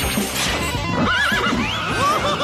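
A cartoon zebra whinnying like a horse, a wavering, shaky neigh starting about a second in, over background music.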